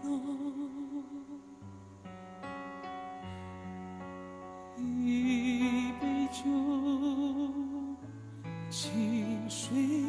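A slow ballad: a male singer holds long notes with a wide vibrato over a sustained accompaniment. His voice drops out for a few seconds in the middle while the accompaniment holds chords, then comes back.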